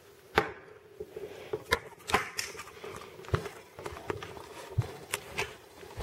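Scattered light clicks and knocks of handling, as a coloured pencil and the camera are moved about over a tabletop, over a faint steady hum.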